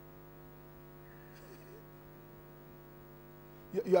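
Steady, faint electrical hum from the microphone and sound system, unchanging throughout, with a man's voice cutting in just before the end.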